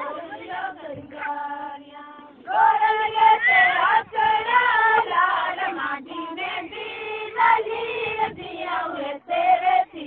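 Women's voices singing a Kutchi folk song (lok geet) together, the singing growing much louder about two and a half seconds in.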